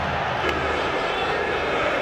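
Steady crowd noise from a football stadium: an even, continuous din with no distinct cheer or chant.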